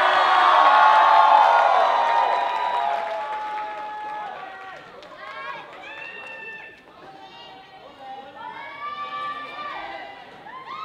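Cheerleading squad shouting a chant in unison, loudest over the first three seconds and then fading, followed by scattered single shouts and cheers with rising pitch.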